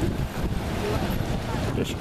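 Steady outdoor noise of wind on the microphone mixed with road traffic, with a man's voice starting again near the end.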